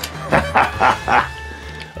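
A man laughing in short bursts over steady background music.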